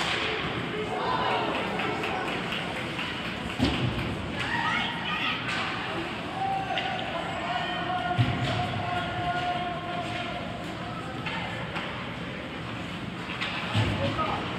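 Ice hockey rink sound: spectators talking and calling out in an arena, with a few sharp thuds from the play on the ice, about 4 s in, at about 8 s (the loudest) and at the end.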